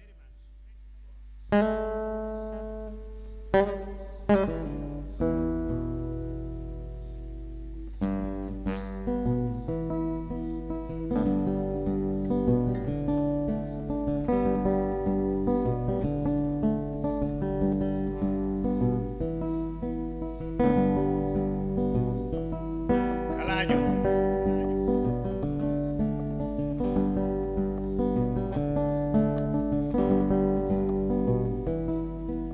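Acoustic guitar starting a piece: a few separate chords ring out in the first five seconds, then from about eight seconds a steady plucked rhythm sets in, joined by small West African plucked lutes (xalam). A steady low hum runs underneath.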